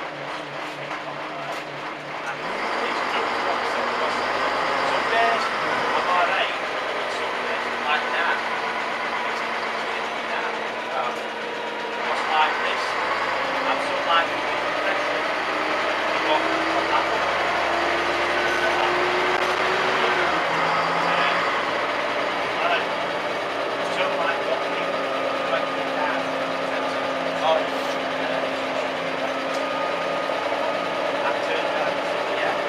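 Single-deck bus heard from inside the passenger saloon while under way: the engine and drivetrain hum steadily over interior rattles. The sound gets louder a couple of seconds in as the bus pulls away. About halfway through, the engine note climbs for several seconds as the bus accelerates, then drops suddenly at a gear change.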